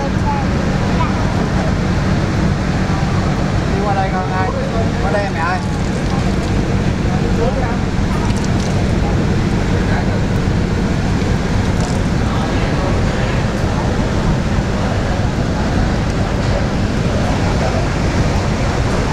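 Steady low drone of a river car ferry's diesel engine running, with passengers' voices faintly in the background.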